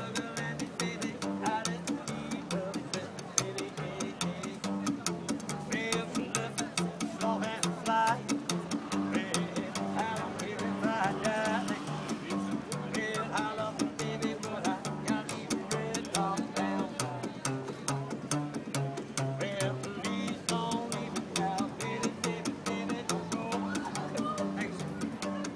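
Upright double bass played pizzicato in a blues groove: low plucked notes moving in a steady rhythm, with an even beat of sharp percussive clicks over them.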